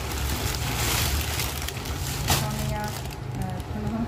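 Plastic bag crinkling and rustling as it is handled and opened, loudest in the first two seconds, with a sharp crackle about two seconds in, over a steady low hum.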